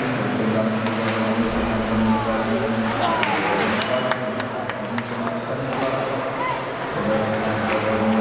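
Indistinct voices and shouts echoing around an ice hockey rink over a steady hum, with a few sharp clacks of sticks and puck about three to five seconds in.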